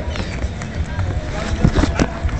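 Dance steps on paving stones: shoes stepping and scuffing, with a few sharper footfalls near the end. A steady low rumble sits under it.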